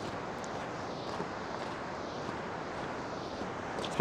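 Steady rushing of white-water rapids.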